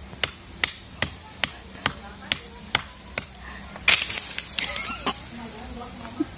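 Knife blade hacking into the woody base of a cassava stem, sharp chopping strokes about two to three a second, cutting through the stem. A short rustling burst of noise about four seconds in briefly interrupts the strokes.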